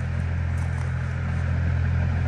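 A steady low machine hum, like an engine running, holding an even pitch and level throughout.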